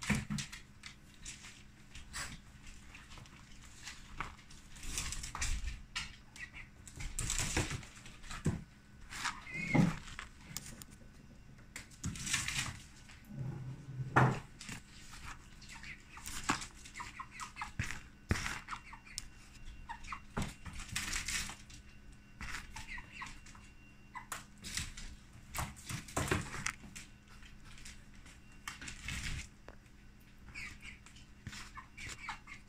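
Scattered scratching and tapping of a chicken's claws and beak and an iguana's claws on a hardwood floor, with one short pitched call about a third of the way through.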